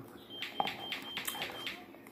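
Close-miked chewing of cup stir-fry noodles: a run of short wet mouth clicks, about four a second, with a faint high whistle coming and going with them.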